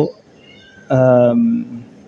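A man's drawn-out hesitation sound: one held vowel starting about a second in and lasting just under a second, dropping in pitch at its end.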